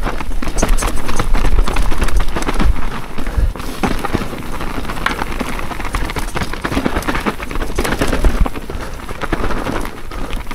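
Mountain bike descending rough forest singletrack: knobbly tyres crunching over dirt and loose stones, with constant knocks and rattles from the bike over the bumps. Louder for the first few seconds, then a little quieter.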